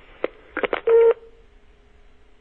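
Telephone line as the call is hung up: a few sharp handset clicks, then a short loud beep about a second in, followed by a faint steady tone on the line. All heard through the narrow sound of a phone connection.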